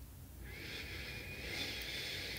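A soft, long breath through the nose, picked up close by the microphone, starting about half a second in and slowly growing louder.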